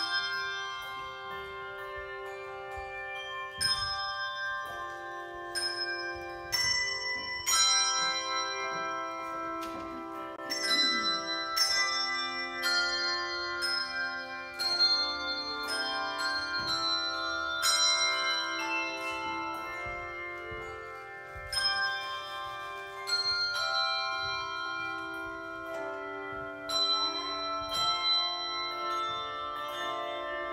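Handbell choir ringing a slow piece: chords of struck bells about once a second, each left to ring and overlap with the next.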